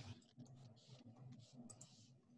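Near silence with a few faint computer clicks, as an answer is entered on a computer.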